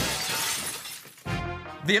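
Breaking-glass sound effect: a sharp crash with a hissing shatter that fades away over about a second, followed by a short burst of music.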